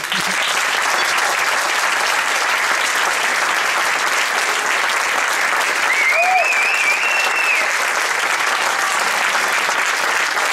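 Concert audience applauding: the clapping starts suddenly as a ringing tone dies away and then holds steady. Someone in the crowd gives a high, wavering whistle about six seconds in.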